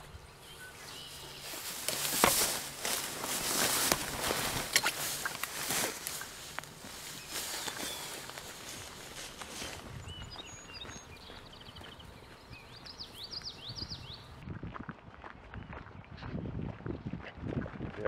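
Footsteps swishing through tall grass, the stalks brushing close past, loudest in the first half. Bird chirps come in partway through, then softer footsteps on a dirt and gravel track.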